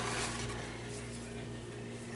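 Quiet room tone with a steady low hum and no distinct event.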